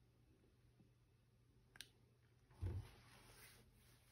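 Near silence, broken by one sharp click a little under two seconds in and a brief low thump of handling noise about two and a half seconds in, as the smartphone is released from its button hold and shifted in the hand.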